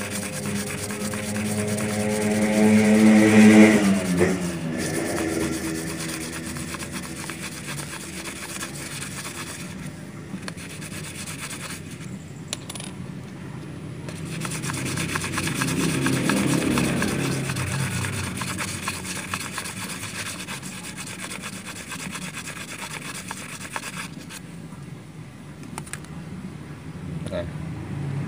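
A small metal sewing-machine tension disc rubbed back and forth by hand on fine sandpaper, a steady scratchy rubbing, polishing scratches off the disc's face that make the upper thread twist and break. An engine rises in pitch and fades in the first few seconds, the loudest sound.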